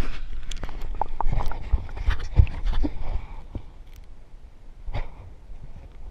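Water sloshing and splashing close on the camera, with handling knocks on its housing, as an action camera is plunged into shallow pond water. A dense run of irregular knocks and sloshes fills the first three seconds or so, then the sound turns muffled and quieter as the camera goes under, with one more knock near the end.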